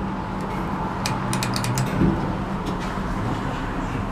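Hydraulic elevator's pump motor running with a steady low hum as the car is sent up. A quick run of light clicks and rattles comes between one and two seconds in.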